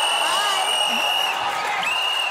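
Referee's whistle blown in two blasts: a long steady shrill blast, then a second one starting near the end, calling a foul to stop a contestant's turn. Studio crowd noise and voices run underneath.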